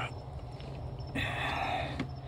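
Flathead screwdriver turning the screw of a hose clamp on a rubber air intake hose: a scraping sound starting about a second in, over a steady low hum.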